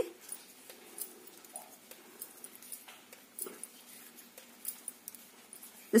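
Faint handling sounds of metal knitting needles working wool yarn: a few light scattered ticks and rustles at low level.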